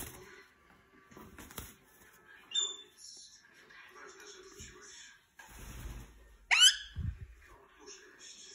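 Rose-ringed parakeet (Indian ringneck) rustling and tugging at a fleece blanket with soft chatter, giving a brief high chirp about two and a half seconds in and a loud, sharply rising squawk about six and a half seconds in.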